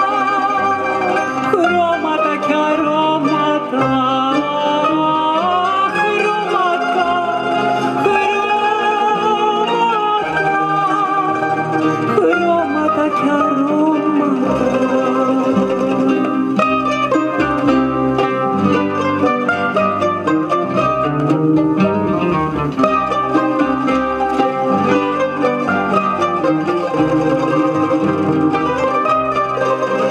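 A woman sings with vibrato, accompanied by a plucked-string orchestra of mandolins and guitars with double bass.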